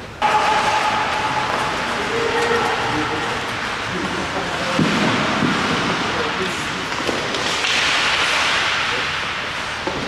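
Ice skates scraping and carving across a bandy rink, a loud steady hiss that swells about three quarters of the way through, with players' voices echoing in the arena.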